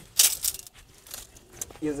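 A short clatter of wooden sticks being handled, loudest about a quarter second in, followed by a few faint ticks.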